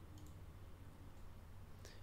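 Very quiet room tone with two faint computer mouse clicks, one near the start and one near the end, as files are picked in an upload dialog.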